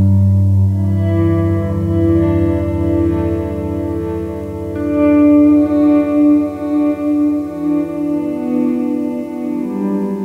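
Squier Starcaster electric guitar played through a Boss DD-20 Giga Delay pedal: sustained notes repeat as echoes that fade gradually and pile up under newer notes, over a steady low note. A louder, brighter note comes in about halfway through.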